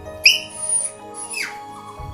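Cavalier King Charles spaniel puppy whining twice, high-pitched: a short cry near the start, then a second whine that falls in pitch, over soft background music.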